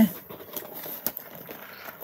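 Faint handling noise as a cardboard box is picked up and lifted: a low rustle with a few light knocks.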